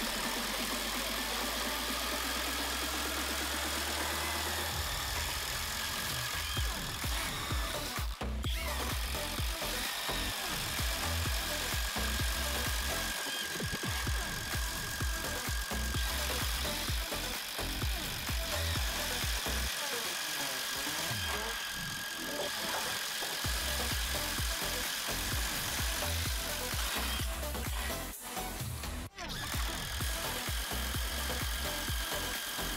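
Background music over two Makita 18 V cordless impact drivers, the brushed DTD152Z and the brushless DTD154Z, boring spade bits through timber, their impact mechanisms hammering continuously.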